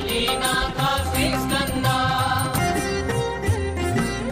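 Hindu devotional mantra chanted over instrumental music with a steady drone: a sung chant of Lord Skanda's (Subrahmanya's) names.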